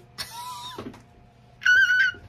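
A small glass perfume sample atomizer sprays with a short hiss, then near the end a woman gives a brief, high-pitched held "ooh" on one steady note.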